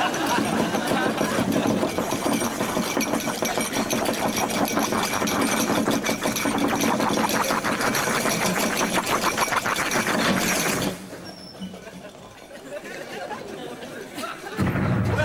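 Chemistry-lab glass apparatus bubbling and rattling fast and loudly as it gives off smoke. The sound stops abruptly about eleven seconds in, leaving a much quieter background.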